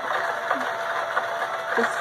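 Hobby rock tumbler running on the first stage of a tumble: a steady gritty rolling of rocks and grit in the turning barrel over a constant faint motor tone.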